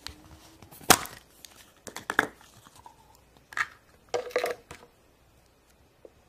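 Plastic play-dough pots and molds being handled: a few short, sharp clicks and crinkling rustles. The loudest comes about a second in, and it falls quiet near the end.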